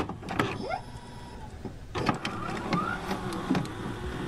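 Electronic intro sound effects for a glitchy loading-bar animation: stuttering digital clicks near the start, a brief held tone, and a couple of short rising sweeps as the bar fills.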